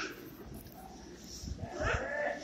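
Faint background voices of children and other visitors, with a voice rising near the end and low thumps from about one and a half seconds in.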